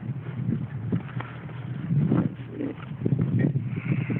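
Footsteps of someone walking on pavement, close to the microphone: a series of uneven thuds over a low steady hum.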